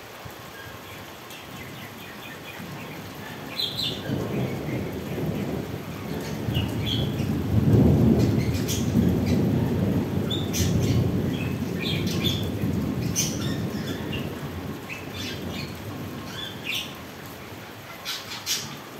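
Rolling thunder: a low rumble swells from about four seconds in, peaks around eight seconds, and dies away slowly over the following several seconds.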